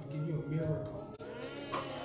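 A voice drawn out with a wavering, bending pitch over faint background music.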